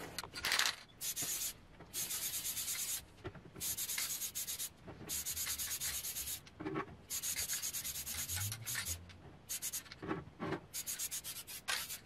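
Aerosol can of Craft Bond spray adhesive spraying in a series of about nine short hissing bursts, each up to a second or so long, with brief pauses between.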